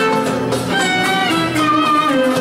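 Live traditional Turkish ensemble playing an instrumental passage: clarinet and violin carry a sustained, bending melody over plucked strings.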